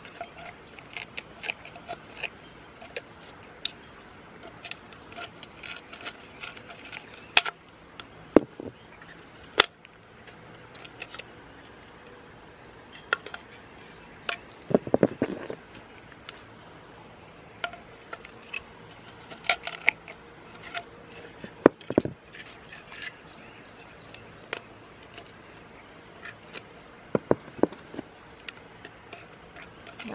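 Tin snips cutting through the red plastic pot used as the inner mould of a cast mortar planter: irregular sharp snips and cracks as the blades close and the plastic gives, with a longer crunching cut about halfway through.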